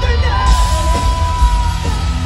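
Live rock band playing loud through a festival PA, with heavy bass and drums. A single long high note enters about half a second in and is held for over a second.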